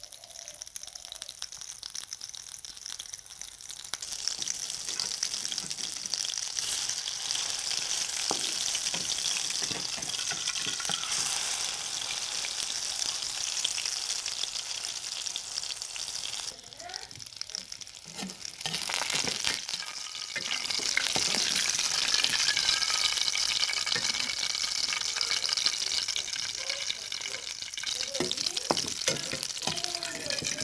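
Fish patties shallow-frying in oil in an aluminium karahi: a steady sizzle that swells about four seconds in, drops away briefly past the halfway mark, then returns louder. A steel slotted spoon turning the patties adds light scrapes and clicks against the pan.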